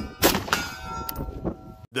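A few sharp cracks, the loudest about a quarter second in, then a metallic clang that rings on in several steady tones for about a second and cuts off abruptly near the end.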